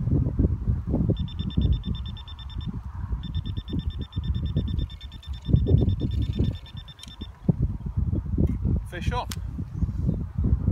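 Electronic carp-fishing bite alarm sounding rapid bleeps, about a dozen a second, as line runs over its sensor while the rod is handled. A short run is followed after a brief gap by a longer run of about four seconds. Wind rumbles on the microphone throughout.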